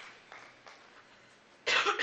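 A person coughing once, loudly, near the end, after a few faint clicks.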